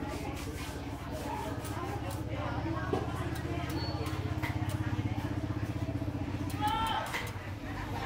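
A small engine running steadily nearby with a fast, even pulse, growing a little louder in the middle, with faint voices in the background.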